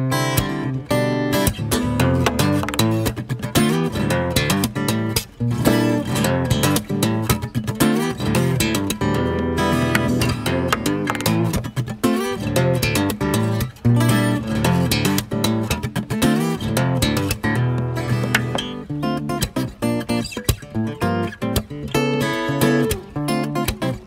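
Solo Takamine acoustic guitar played fingerstyle: a busy jazz-fusion instrumental of quick plucked notes mixed with chords.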